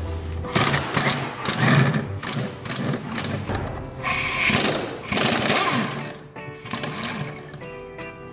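Air impact wrench hammering in several short bursts as it undoes the shock absorber's upper mounting nut, over background music.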